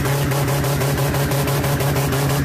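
Car engine with a very loud exhaust held at steady high revs, the sound harsh and pulsing about ten times a second.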